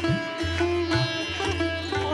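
Background music: an Indian instrumental with a plucked-string melody whose notes slide up and down, over a sustained low drone.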